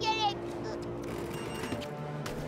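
A cartoon character's short vocal sound, falling in pitch, at the start, then quiet background music under the scene.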